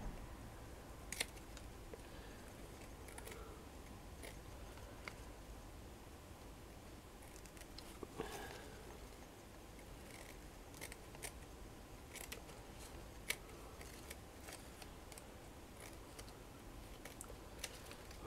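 Scissors snipping through stiff crinoline backing fabric: faint, short snips at irregular intervals with quiet gaps between them.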